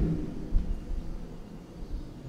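Low background rumble with faint hiss, and a short soft thump about half a second in.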